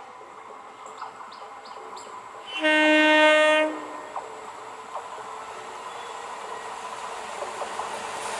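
EMU train approaching and sounding its horn in one long blast of about a second, a little over two and a half seconds in. The noise of the oncoming train grows steadily louder.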